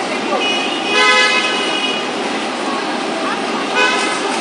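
Car horn honking: one long steady honk starting about half a second in and lasting about a second and a half, then a short toot near the end, over street chatter and traffic.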